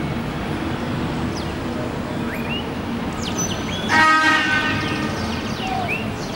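City street ambience with a steady traffic din, and a vehicle horn sounding once about four seconds in for roughly a second, the loudest sound. Short high chirps come and go over the background.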